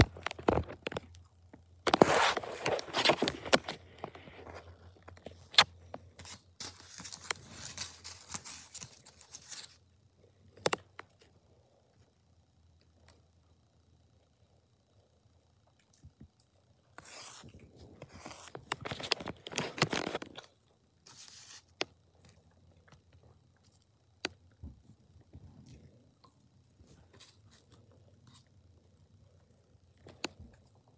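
A person eating fast food fries and chicken nuggets close to the microphone: bursts of chewing, crunching and scraping, with a few sharp clicks and stretches of near quiet between.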